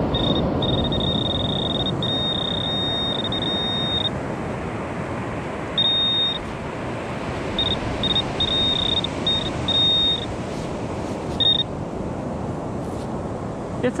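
Handheld metal-detecting pinpointer sounding a high, single-pitch alert tone as it is probed in the sand over a buried coin. The tone is nearly continuous for the first few seconds, then comes in shorter on-off beeps as the sand is scooped away, over a steady background rush.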